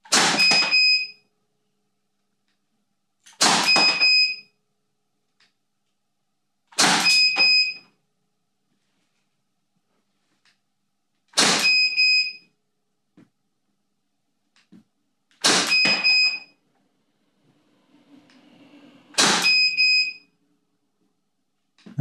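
Six shots from a CO2-powered 11 mm (.43-calibre) T4E pistol, spaced about three to four seconds apart. Each shot is followed by a short high beep from an optical ballistic chronograph registering it.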